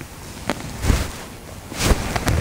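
Rustling and a few soft knocks, the loudest near the end, from a person moving through low berry shrubs on the forest floor, with handling noise on a hand-held camera.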